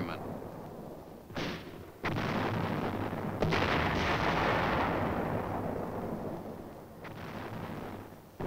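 Heavy 4.2-inch mortar fire: a short bang about a second and a half in, then two heavy booms at about two and three and a half seconds. Each boom trails off in a long rumble that fades over several seconds, and a smaller one comes near the end.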